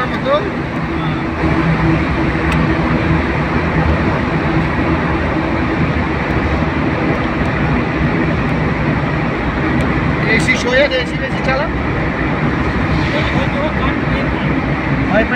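Car driving through a road tunnel, heard from inside the cabin: a steady, loud engine and tyre noise. A voice comes in briefly about ten seconds in.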